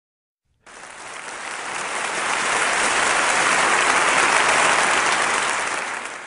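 Audience applauding, starting suddenly under a second in, swelling, then dying down near the end.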